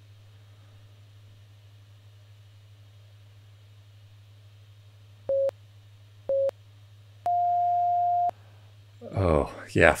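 Workout interval timer beeping the end of a work interval: two short beeps a second apart, then one long, slightly higher beep. A steady low hum lies beneath.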